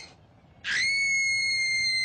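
A coloratura soprano's scream held on one very high, steady note, starting about two thirds of a second in after a short pause.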